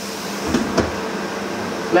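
A glass lid set down on a frying pan of stir-fry, with soft low knocks a little over half a second in, over a steady hiss.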